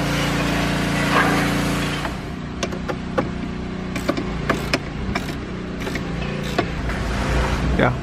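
Hands fitting the plastic glove box and lower dashboard trim of a Ferrari 488 Spider, making a series of sharp clicks and taps from about two seconds in as the parts are pushed and adjusted into place. A steady hum runs underneath.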